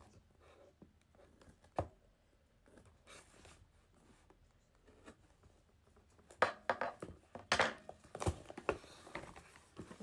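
Cardboard shipping box being opened by hand: scattered light taps and scrapes, a sharp knock about two seconds in, and a busier stretch of packaging handling noise from about six seconds in.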